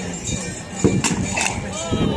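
Crowd voices and faint background music, broken by two sharp knocks close together about a second in: the weapons striking the round shield during a staged sword-and-shield bout.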